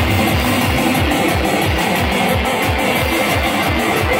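Live rock band playing loud through a PA: electric guitar, keytar and a drum kit whose kick drum beats rapidly, several thumps a second.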